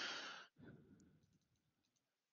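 A short breath out into a close microphone in the first half second, then near silence.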